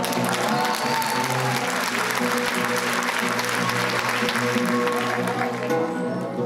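Concert hall audience applauding over music from the stage, with held instrument notes under the clapping. The applause thins out about five and a half seconds in, leaving the music.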